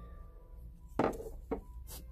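A few light clicks and taps of small parts being handled, a sharper one about a second in and two smaller ones after, over a low hum.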